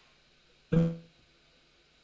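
A single word from a man's voice, about a second in, coming through a video call as a short, buzzy, held tone while the connection breaks up; otherwise faint room tone.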